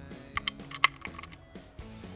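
A few quick clicks, the sharpest a little under a second in, as a Petzl zipline trolley is set into place in the BrakeHawk brake's housing. Background music runs underneath.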